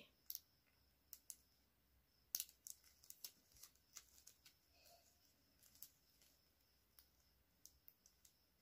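Faint, irregular small clicks and crinkles of flat plastic craft wire strands being handled and worked through a woven knot.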